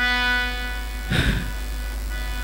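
A musical instrument in the jatra accompaniment holds one steady note, with a short rush of noise a little over a second in.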